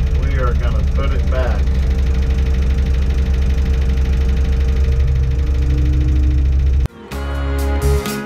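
Tadano all-terrain crane's diesel engine running steadily, heard from inside the operator's cab while the hoist lifts a load; a voice speaks briefly about a second in. About seven seconds in, the engine sound cuts off abruptly and strummed guitar music begins.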